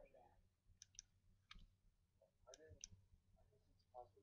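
Faint computer mouse clicks, several sharp clicks, some in quick pairs, with faint murmured voices underneath.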